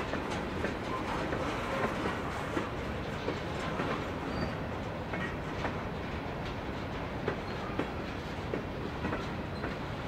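Freight cars rolling slowly past: a steady rumble of steel wheels on rail, with scattered sharp clicks as wheels pass over the rail joints.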